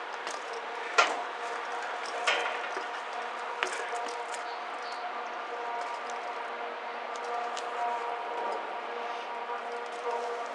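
A steady mechanical hum holding a few even tones, with three sharp knocks in the first four seconds.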